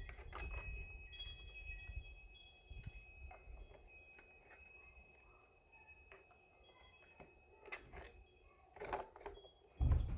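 Light clicks, taps and scrapes as a plastic mat on a length of PVC pipe is slid and seated into the top of a metal highbanker sluice box, with a few louder knocks near the end.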